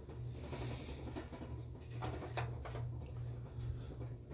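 Faint rustles and a few soft knocks from a handheld phone being moved and carried about a carpeted room, over a steady low hum.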